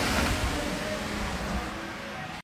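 Steady rushing noise of heavy rain outdoors, with a low rumble underneath, fading gradually as the phone is carried back indoors.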